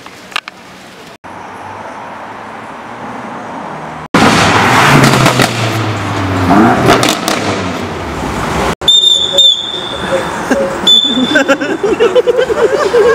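A BMW M5's V8 engine as the car drives past, its pitch rising and falling. From about nine seconds in, a whistle is blown in short shrill blasts, a few times, with a man yelling at the car.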